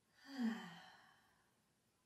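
A woman's audible sigh, a relaxing breath out that falls in pitch and fades away by about a second and a half in.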